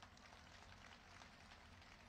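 Near silence: faint steady background hiss with a low hum.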